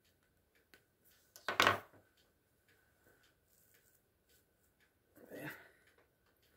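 A hairbrush is stroked through a short synthetic wig twice: a loud brushing swish about a second and a half in and a softer one near the end. Faint, regular ticking runs underneath.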